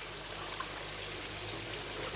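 Steady trickling and sloshing of water in a shallow plastic tub while a young thornback ray is handled in it.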